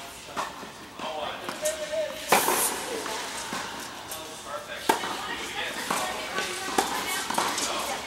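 Tennis rackets striking a tennis ball in a rally on an indoor court: a few sharp pops a second or two apart, the loudest about two seconds in, echoing in the large hall, with players' voices in the background.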